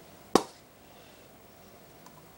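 A single sharp click as the plastic cap snaps off a can of Pure Silk shaving cream.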